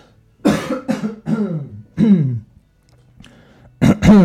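A man coughing and clearing his throat in three voiced bursts over the first two and a half seconds, then starting again near the end. It is the cough of a voice that is giving out.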